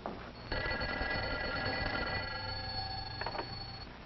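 Office desk telephone bell ringing once, one long steady ring that starts about half a second in and stops shortly before the end, with a couple of clicks near the end.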